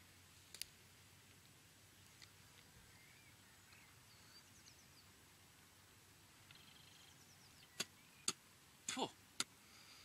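Near silence outdoors, with faint distant birdsong chirping now and then and a few short sharp clicks, most of them in the last two seconds.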